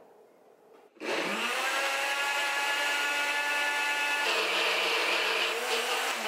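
NutriBullet blender motor starting about a second in and running steadily with a whine, its pitch dropping about four seconds in as it churns frozen banana, almond milk and cocoa into a thick ice-cream mixture.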